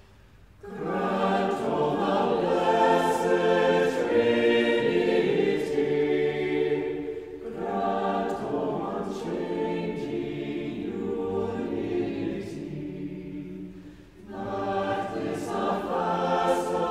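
Church choir singing unaccompanied in phrases. It comes in about half a second in after a pause, breathes briefly around seven seconds in, and begins a new phrase near the end.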